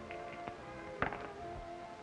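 Background music with steady held notes, under a few light clicks and one sharp click about a second in: dice being thrown and landing on a gaming table.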